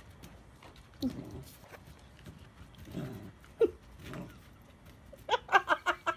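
A puppy making short barks and growls, then a quick run of high-pitched yips near the end.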